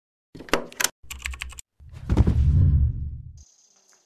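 Logo-intro sound effects: two quick runs of sharp clicks, like a switch or keys being tapped, then a swelling whoosh with a deep low rumble that fades out after about a second and a half.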